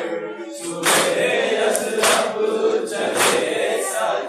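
A large group of men chanting a nauha (Shia lament) in unison, with the loud, synchronised slap of many hands striking chests in matam about once a second, three strikes in all.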